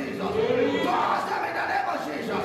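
A man's loud, fervent praying into a microphone, in repeated shouted phrases with no recognisable words, over a crowd of voices.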